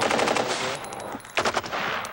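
Automatic gunfire: a rapid burst of shots, then another short burst about a second and a half in.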